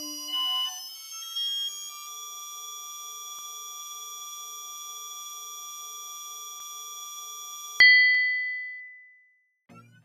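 Synthesized sound effects under a loading animation: a rising electronic sweep with short blips levels off into a steady held tone. About eight seconds in a sharp ding cuts it off, then rings and fades over about a second and a half.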